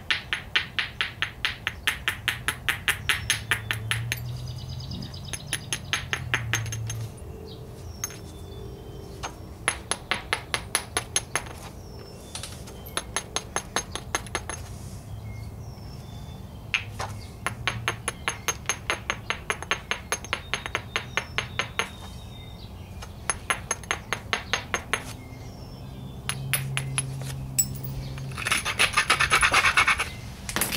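A stone biface's edge being abraded with a stone to prepare a striking platform: runs of rapid scraping ticks, about eight a second, each run lasting a second or several, with short pauses between.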